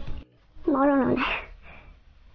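A single short pitched vocal call, under a second long, coming out of a brief hush about half a second in and ending in a short hiss.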